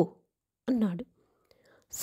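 A narrator's voice reading a story aloud in Telugu: one short word about two-thirds of a second in, then a faint breath in the pause, with the next phrase starting at the very end.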